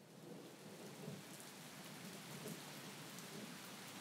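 Faint, steady rain ambience: an even hiss of rainfall with no distinct events.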